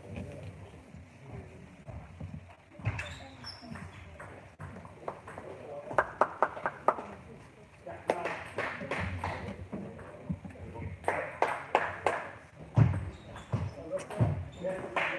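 Table tennis ball clicking: a quick run of even bounces about six seconds in, then sharper hits on bat and table as a rally gets going in the last few seconds, over voices in a large hall.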